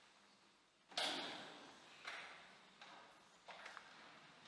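A few sharp knocks echoing through a large church: the loudest about a second in, then three softer ones over the next few seconds, each ringing away slowly.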